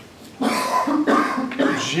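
A person coughing and clearing their throat in three short, rough bursts, starting just under half a second in.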